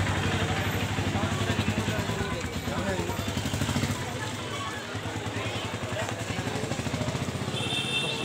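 A small vehicle engine running close by with a fast, even pulse, fading after about four seconds, over the voices of a crowded street.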